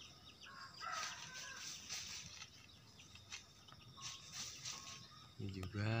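Faint outdoor morning ambience with distant birds calling in short bursts, twice.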